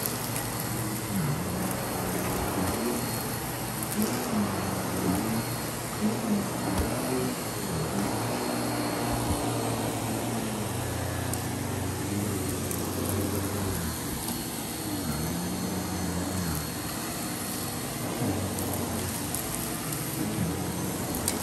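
Miele canister vacuum cleaner running, its powered brush head pushed back and forth over a shag rug: a steady rush of suction with a low hum that wavers up and down.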